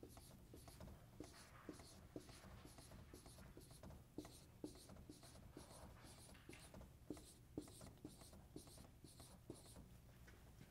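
Dry-erase marker drawing a row of small circles on a whiteboard: faint, evenly repeated strokes, about two a second, each with a light tap of the tip.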